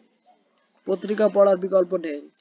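Speech only: a voice reads aloud in Bengali, starting about a second in after a short pause.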